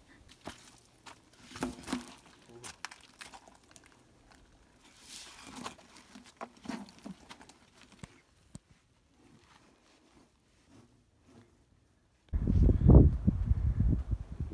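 Plastic trash bag crinkling and rustling as trash is handled and stuffed into it, with scattered clicks and knocks. A sudden loud low rumble sets in near the end.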